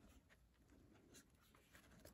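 Near silence, with the faint rustle and light ticks of a glossy book page being turned by hand.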